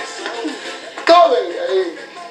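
Television audio of background music with a voice calling out, heard through the TV's speaker; a sharp knock comes about a second in.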